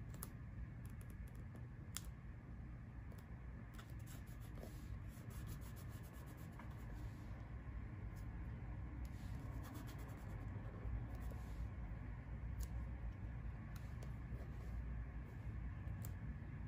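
Paper planner stickers being peeled from their sheet and pressed and rubbed down onto the planner page: faint paper rustling and scattered small clicks and ticks, over a steady low hum.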